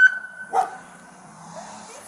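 A siren's high wail, just risen to its top pitch, holds and fades out about half a second in, as a dog barks once; after that only a faint low hum remains.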